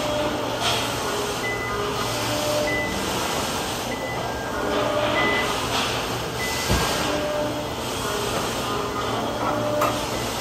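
A forklift working beside a truck: a steady low mechanical hum with a single thump about seven seconds in. Short pitched notes at changing heights sound over it.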